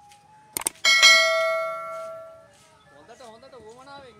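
Subscribe-button sound effect: two quick mouse clicks, then a bright bell chime that rings out and fades over about a second and a half.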